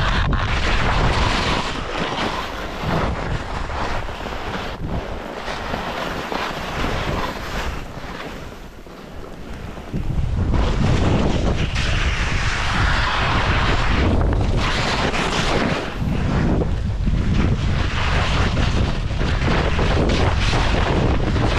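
Wind buffeting an action camera's microphone together with skis scraping and hissing over packed snow on a fast descent. The sound thins out for a couple of seconds just before halfway, then comes back louder with heavy low rumble.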